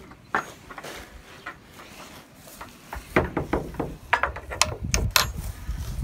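Knocks and clatter against the wooden rails of a calf pen as someone goes in through it, then footsteps and rustling in hay from about halfway, with rumbling bumps of a handheld camera being jostled.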